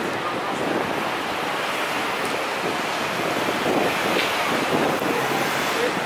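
Steady city street noise, an even wash of traffic and street sound with no single event standing out.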